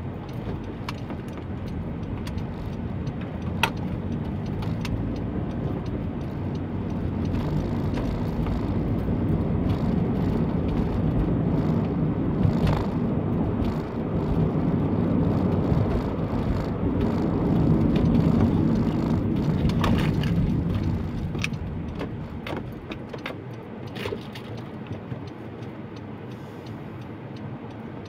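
Car driving, heard from inside the cabin: a low engine and road rumble that grows louder over the first several seconds, holds, then falls away after about twenty seconds. A few light clicks come near the end.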